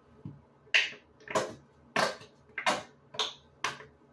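Hands squeezing and scrunching wet, dye-soaked hair, making six sharp squelches about 0.6 s apart from just under a second in. The dye is a conditioner-based lilac colour.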